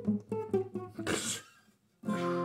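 Acoustic guitar picked one note at a time for about a second, then a short hiss and a moment of near silence as the playing stops.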